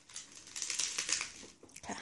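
Crisp lettuce leaves crinkling and rustling under a child's hands as she presses them down on a plate; the rustle dies away near the end.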